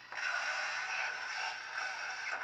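Lightsaber replica's blade-lockup sound effect played from its ProffieOS sound board and hilt speaker: a crackling buzz that cuts in suddenly just after the start and holds steady.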